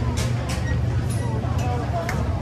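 Chatter of a crowd of passers-by over a steady low rumble, with a few short sharp clicks.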